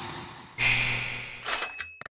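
Sound effects of an animated subscribe-button graphic: two puffs of hiss that each fade away, then a few clicks with a short, high ringing near the end.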